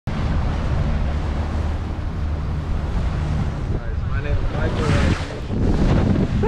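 Wind buffeting the microphone at the bow of a moving motorboat, over a low steady engine rumble and water noise.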